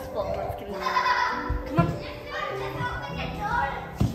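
Children's voices, playing and calling out, over background music.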